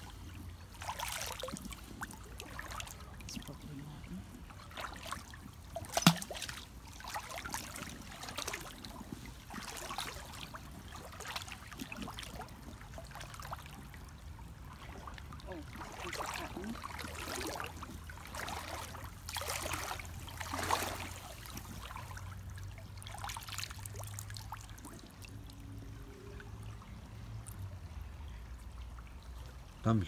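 Shallow stream water splashing and sloshing in irregular bursts as someone wades and rummages through the gravel bed, with a sharp knock about six seconds in.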